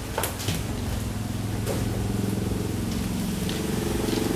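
An engine running steadily at a low, even pitch, growing slightly louder. A few light clicks or knocks come in the first two seconds.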